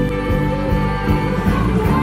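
Live band music: electric guitar, electric bass and acoustic guitar playing together over a drum beat.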